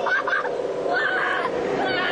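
Riders on a whitewater rafting ride giving short, high laughing shrieks, near the start and about a second in, over a steady rush of water.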